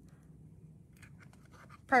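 Faint scratching and clicking of a ribbon being worked through a small hole in a paper cup, a few short, soft ticks in the second half of an otherwise quiet stretch.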